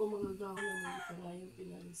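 A rooster crowing once: a call of about a second that slides down in pitch at its end.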